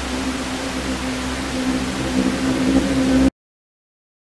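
Television static: a steady hiss with a low electrical hum under it, cutting off suddenly a little over three seconds in.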